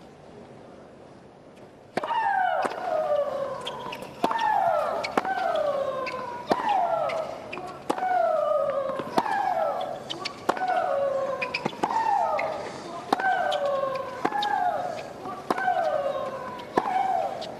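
Tennis rally between two professional women players: about two seconds in, a racket strikes the serve, and then each crack of racket on ball comes with a loud shriek from the hitting player that falls in pitch, about one shot a second.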